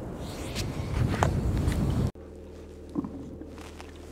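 Footsteps on snowy ground, with wind rumbling over the microphone, for about two seconds; then a sudden cut to the quieter, steady low hum of a car's cabin.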